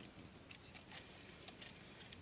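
Faint, scattered clicks and ticks of plastic Lego Technic parts as the buggy is handled and its steering mechanism turned by hand.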